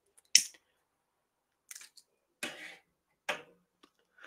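A pause that is mostly quiet, broken by a few short, sharp clicks: the loudest comes about a third of a second in and another near the end. A brief soft rustle falls in the middle.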